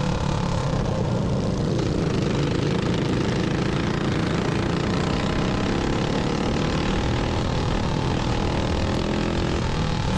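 Single-cylinder Predator 212 four-stroke kart engine running hard and steady under racing load, heard onboard with a haze of wind and track noise; its pitch wavers slightly as the throttle is worked.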